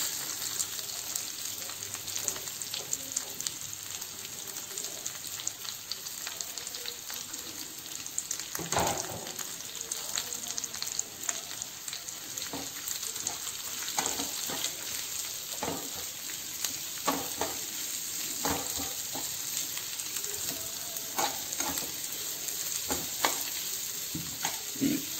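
Sliced small onions frying in hot oil in a non-stick wok: a steady sizzling hiss, joined from about nine seconds in by the repeated scrape and clatter of a metal spatula stirring them.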